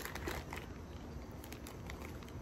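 Faint handling of a plastic packaging pouch: a soft rustle with a few light clicks as green plastic plant-watering spikes are taken out.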